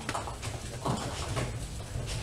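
Scattered hollow knocks and clacks from nine-pin bowling lanes, about four in two seconds: balls and pins on the neighbouring lanes, over a steady low hum.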